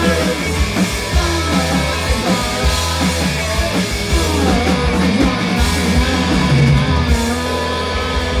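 A live rock band playing loud on stage, with electric guitars and vocals and notes that slide in pitch.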